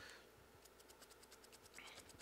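Faint, rapid scratchy strokes of a paintbrush's bristles being dragged over a textured, primed foam claw while dry-brushing paint on.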